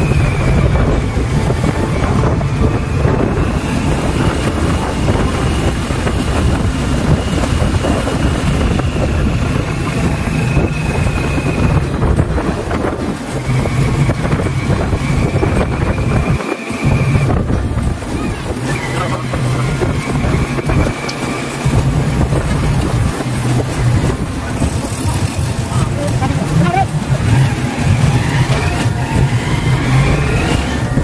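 The engine of the vehicle carrying the camera running loudly and steadily as it drives along a road, with wind buffeting the microphone. The engine sound drops out briefly a little past halfway, then picks up again.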